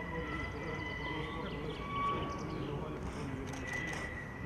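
Faint, indistinct murmur of people talking in the background, with a faint steady high-pitched tone running under it.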